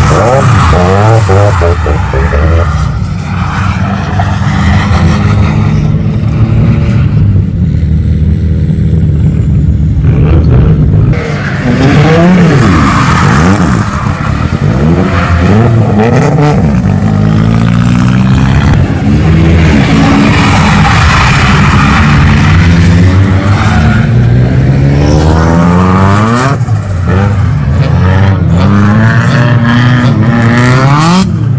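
Drift cars on track, their engines revving up and down again and again as they slide past, with tyres skidding.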